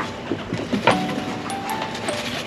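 Chinchilla dust-bathing in a clear plastic bath house: sand swishing and scratching against the plastic as it rolls, with a sharper burst just under a second in, over background music with held notes.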